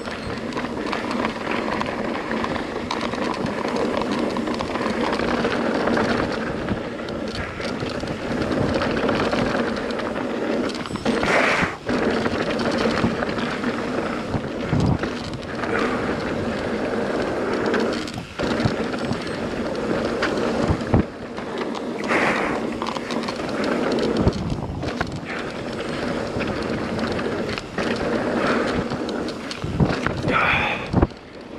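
Mountain bike descending a dirt and gravel downhill trail at speed: a continuous rolling rumble of tyres over the loose surface, with the bike rattling. Several sharp knocks from bumps and jump landings come through the second half.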